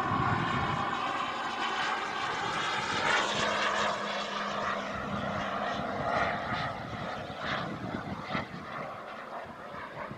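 The I-Jet Black Mamba 140 turbine of a large RC model jet in flight: a continuous rushing jet whine that eases off somewhat in the last few seconds.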